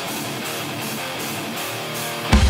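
Electric guitar playing alone in a hardcore punk song, strummed, with the bass and drums dropped out.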